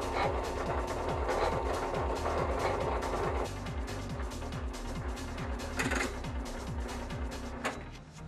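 Electric winch motor of a scaffold hoist running steadily with a low hum and some mechanical clicking as it pays out its wire rope, stopping just before the end.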